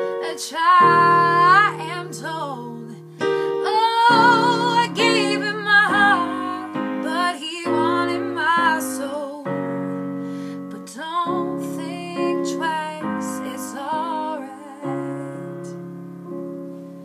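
A woman singing long, bending notes with vibrato over sustained chords played on a digital piano keyboard.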